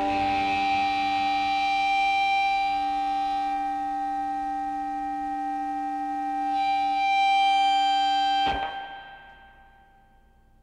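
A distorted electric guitar chord held and ringing on with feedback, a higher overtone swelling up about seven seconds in. It cuts off abruptly about eight and a half seconds in and fades to silence, the end of the track.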